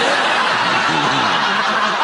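Studio audience laughing, a dense, even wash of laughter that holds steady throughout.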